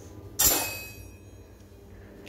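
Hands handling a paper sheet and a paper tube on a table: one sudden loud handling noise about half a second in, fading within about half a second, then faint room noise.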